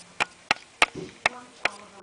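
A series of short sharp taps, about three a second, keeping an even rhythm.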